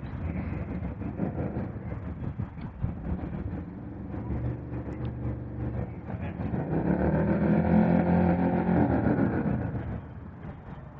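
Harley-Davidson V-twin motorcycle engine running. It swells louder about seven seconds in, its pitch rising and then falling, and drops back just before the end.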